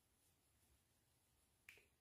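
Near silence, with one faint click near the end.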